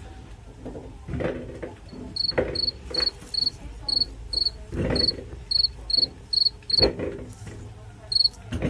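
A cricket chirping in short, high, evenly spaced pulses, about two a second, from about two seconds in. Among them come a few dull knocks as small potatoes are dropped into a plastic bowl.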